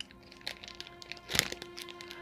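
Crinkly plastic wrapper of an ice cream waffle being handled, a run of crackles with the loudest burst about one and a half seconds in, over quiet background music.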